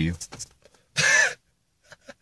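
A young man's short, high-pitched squeal of laughter about a second in, as loud as his speech.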